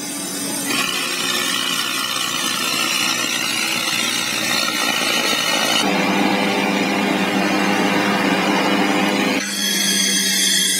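Steady machine noise from the running SteamRay rotary engine and generator rig: a continuous high whine over hiss. It shifts abruptly in pitch and tone about a second in and again around six seconds in.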